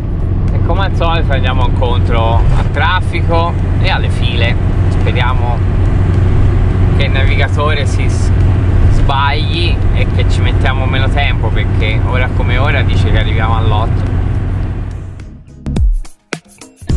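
Steady low engine and road rumble inside a motorhome cab at motorway speed, with a voice heard over it at intervals.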